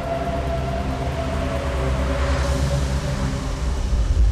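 Cinematic logo-intro sound design: a deep sustained drone under a held tone that slowly sinks in pitch, with a rush of noise swelling about halfway through, building toward the logo reveal.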